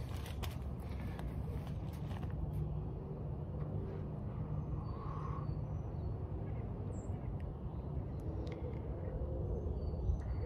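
Outdoor background: a steady low rumble with a few faint, short high chirps, typical of birds.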